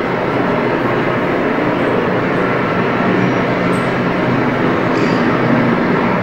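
Loud, steady rumbling noise from a TV news report's soundtrack played over a hall's loudspeakers, with no narration.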